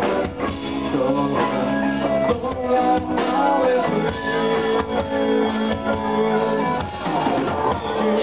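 Live rock band playing an instrumental passage: electric guitars with bending notes over a drum kit, no singing.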